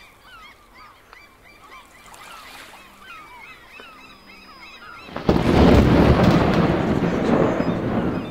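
Birds calling in many short, curved calls for about five seconds. Then a loud rushing noise sets in suddenly and fades away near the end.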